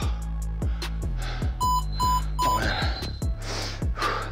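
Three short electronic beeps from a workout interval timer, evenly spaced about half a second apart near the middle, marking the start of the next timed work interval. Background music with a steady beat plays throughout.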